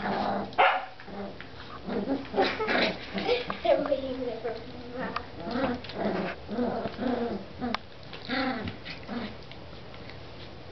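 Border collie puppies growling and yapping as they play-fight, a run of short pitched growls and yelps with a sharp loud yelp about half a second in.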